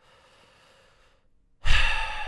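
A person's faint in-breath, then a loud, heavy sigh blown close into the microphone about one and a half seconds in, trailing off slowly.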